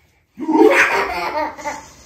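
A toddler laughing: a loud burst about half a second in, trailing off over about a second.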